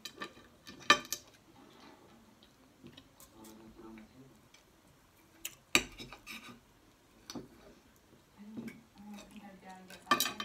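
Metal knife and fork clinking and scraping on a ceramic dinner plate while cutting steak, in irregular sharp clinks, the loudest about a second in and near six seconds in.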